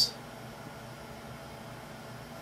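Steady faint hiss of room tone and recording noise, with no distinct sound event.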